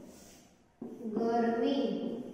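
A woman's voice speaking, starting about a second in.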